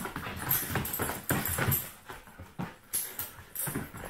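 An Australian cattle dog in rough play: irregular scuffling and knocks as it scrambles about, its paws and claws scrabbling on a rug and tile floor.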